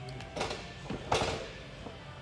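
Handling noises of a drink can being lifted and drunk from: a few short scrapes and rustles, the loudest a brief rush of noise about a second in.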